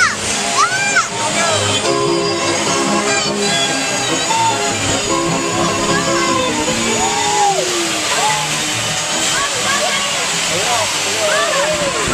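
Amusement-ride music playing over a steady rush of noise, with children squealing and shouting in short rising-and-falling cries throughout, and an adult's "oh" near the end.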